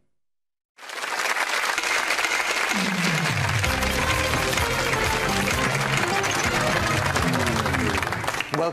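After a brief silence, game-show theme music starts suddenly about a second in and plays steadily over studio audience applause.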